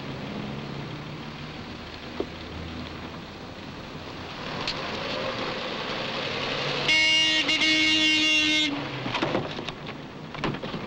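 Outdoor traffic noise, then a vehicle horn sounding one steady blast of about two seconds a little before the end.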